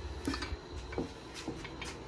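A 3/8-inch ratchet turning the crankshaft inside a freshly torqued Volkswagen air-cooled engine case, with faint clicks about every half second. The crank is turning perfectly in its new main bearings, the sign of correct bearing clearance.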